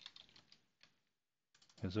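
Faint computer keyboard typing: a quick run of keystrokes in the first second, then a short silence.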